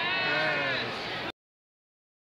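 A woman's voice with its pitch gliding up and down, cut off abruptly a little over a second in, followed by dead silence as the recording stops.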